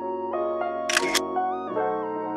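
Background piano music, with a camera shutter sounding about a second in as two quick clicks close together.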